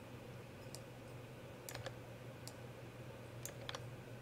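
Faint, irregular clicks of a computer mouse and keyboard, some in quick pairs, over a steady low hum.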